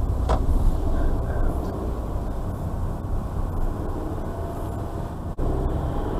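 Car cabin noise while driving slowly: a steady low engine and road rumble, with a sharp click just after the start and a momentary drop-out about five seconds in.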